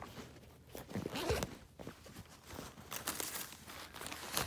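Hands rummaging in a backpack: its zipper and fabric rustling in a few short, irregular bursts, the strongest about a second in and again near three seconds.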